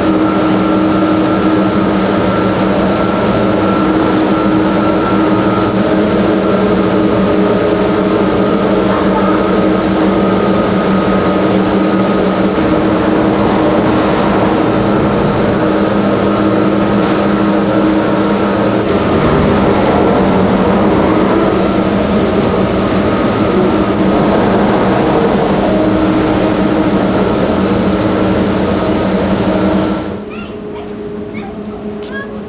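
Station machinery of a 1979 Montaz Mautino six-seat gondola lift running, with cabins moving through the station: a loud, steady mechanical drone with a constant hum at several pitches.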